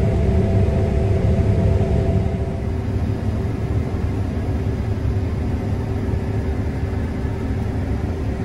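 New Holland combine harvester running while cutting wheat, heard from inside the cab: a steady low rumble with a constant hum, easing slightly a few seconds in.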